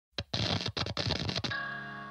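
A rapid, irregular run of sharp clicks, then a ringing chord that begins about a second and a half in and slowly fades.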